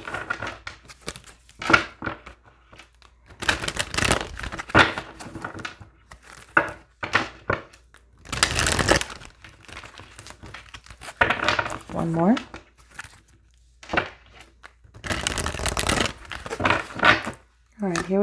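A deck of oracle cards shuffled by hand in several separate bursts of rustling and riffling, a few seconds apart.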